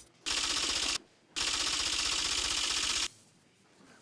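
An edited-in sound effect: a rapid typewriter-like clatter of fast clicks in two bursts, a short one and then one nearly two seconds long, with a brief gap between.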